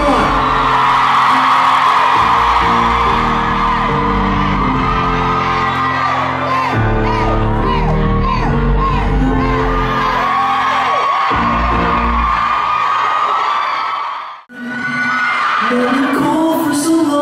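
Loud concert music with a steady bass line, under a crowd of fans screaming and cheering. About fourteen and a half seconds in the sound cuts out almost to silence, then music and crowd come back in.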